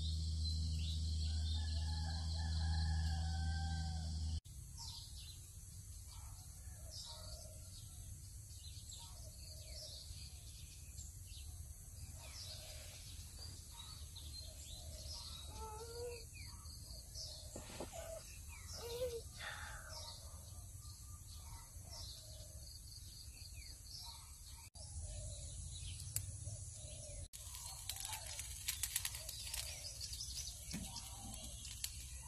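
Rural outdoor ambience with birds calling and chirping in scattered short phrases over a steady background hiss. For the first few seconds a high, steady insect chorus and a low hum sit underneath. A few sharp clicks come near the end.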